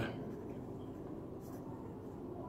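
Pen writing on paper: faint scratching as a word is written out by hand.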